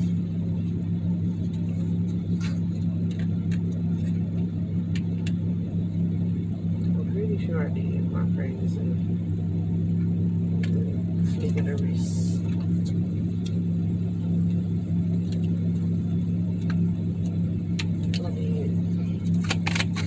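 Steady low hum of a running car heard from inside the cabin, with a few scattered light clicks and a cluster of clicks near the end.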